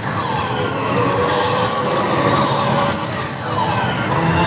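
Electronic sound effects from a Hokuto no Ken Kyouteki pachislot machine, sweeping tones and held notes that rise and fall, over the steady din of a pachinko parlour.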